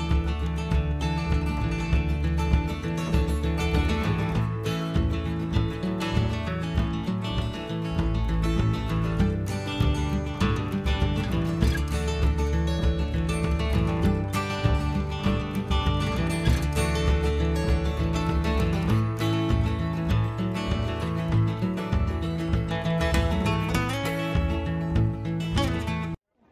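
Background music, with guitar-like plucked tones, playing steadily throughout.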